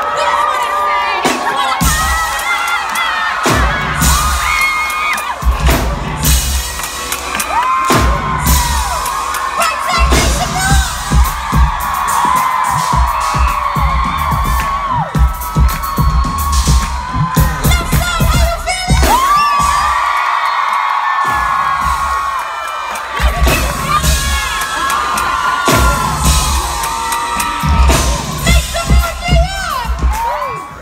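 Live pop concert heard from inside the crowd: a singer and band through the PA with a heavy pulsing bass beat, and fans screaming and singing along. The beat drops out for a couple of seconds about two-thirds of the way through, then comes back.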